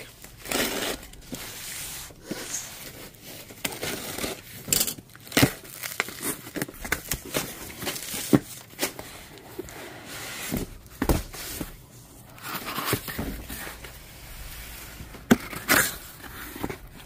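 Corrugated cardboard box being opened: a box cutter slitting the packing tape, then the flaps pulled apart and the inner boxes handled, with irregular scraping, rustling and short sharp knocks.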